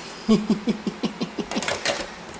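A man laughing in a quick run of short "ha-ha" pulses.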